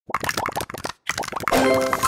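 Sound effects of toy bricks clicking into place: a fast run of small plastic plops, broken by a short silence about a second in. A bright musical jingle chord then starts near the end.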